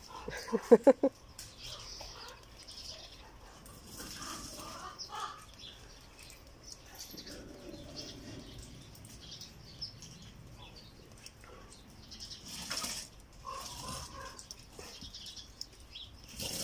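Faint scattered knocks, scrapes and rustles of an animal playing with a toy, after a short, loud voice-like sound about a second in.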